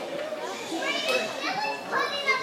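Crowd chatter: many overlapping voices of spectators talking and calling out at once, several of them high and young-sounding, in a hall with some echo.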